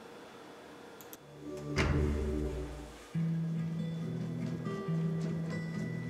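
Opening of a film trailer's soundtrack: a couple of faint clicks about a second in, a deep boom about two seconds in, then held low music notes that start suddenly about a second later and carry on.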